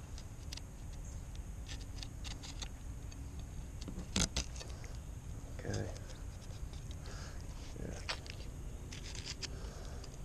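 A fillet knife being worked along the backbone of a fluke (summer flounder), with scattered small clicks as the blade catches on the bones, one sharper click about four seconds in, over a steady low rumble.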